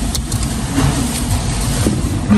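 A Toyota RAV4 running, heard from inside its cabin as a steady low rumble with an even hiss over it.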